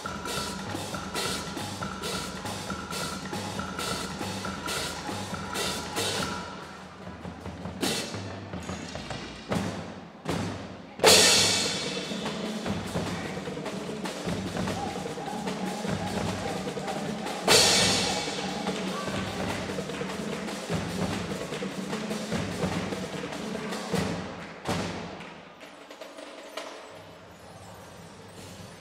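Youth percussion band playing snare and bass drums. A high ticking mallet pattern repeats about three times a second at first, two loud ringing crashes come partway through, and the playing gets quieter near the end.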